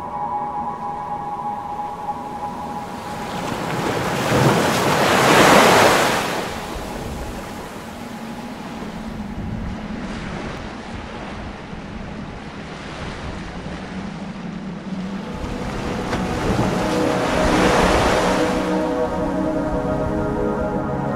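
Ambient, wordless passage of a pop song recording: two slow swells of noise like waves washing in, the louder about five seconds in and a smaller one near the end, over faint sustained tones that grow fuller near the end.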